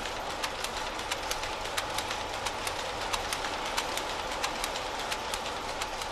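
Steam-driven weaving shed machinery: power looms clacking sharply several times a second over the steady din of the line shafting, belts and bevel gears driven by the mill's steam engine.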